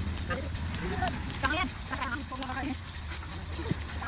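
People talking in the background, not close to the microphone. Scattered sharp crackles and clicks come from rice grains roasting in a dry wok over a fire.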